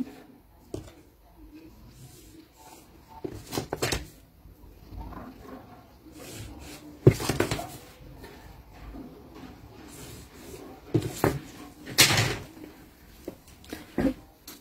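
A long curved wooden hip ruler being handled on pattern paper laid on a table, with a marker drawing on the paper: scattered knocks and short paper rustles, the loudest about seven seconds in and about twelve seconds in.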